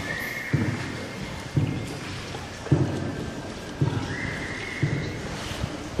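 Paddle strokes of a tour boat on the river, a low thud about once a second that fades into the echo of the cave, over a steady watery hiss.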